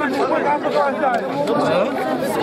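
Several people talking at once: steady overlapping crowd chatter.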